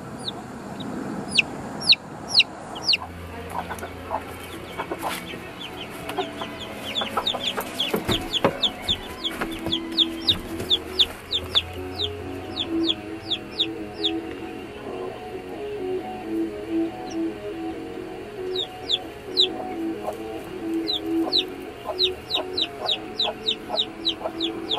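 Chickens peeping and clucking: runs of short, high, falling peeps several to the second come in bursts near the start, through the middle and again near the end.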